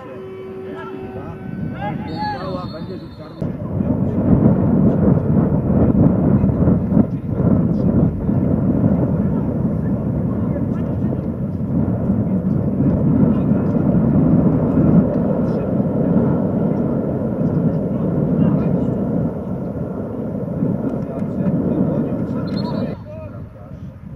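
Loud, low rumbling noise of wind buffeting the microphone at an outdoor football pitch, setting in a few seconds in and cutting off abruptly near the end. Before it come a few shouting voices and a short, high whistle blast.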